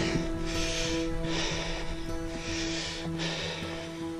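Soft background music of long held notes, over a person's heavy breathing, about one breath a second, while climbing a steep slope.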